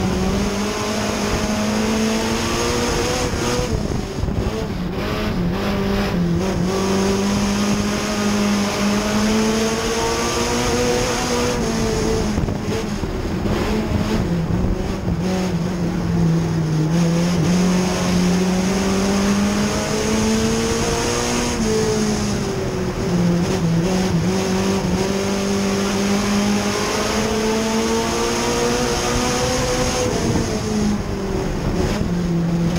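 A Pony-class dirt-track race car's engine, heard from inside the car, running hard for lap after lap. Its pitch falls and climbs again about every eight seconds as the driver comes off and back onto the throttle, over steady road and wind noise.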